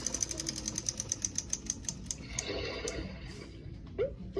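Battery-powered baby toy on a store shelf making a rapid ticking sound, about ten ticks a second, that slows and stops about three seconds in.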